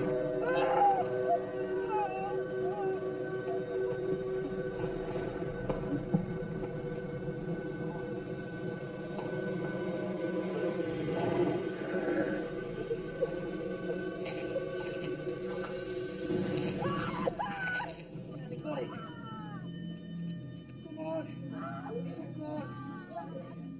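Film score drone of sustained low tones, with a person's moaning and wailing over it: wavering cries near the start and again from about three-quarters of the way in.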